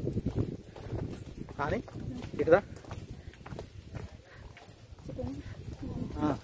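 Footsteps on stone steps, a run of hard taps as two people walk the stairway.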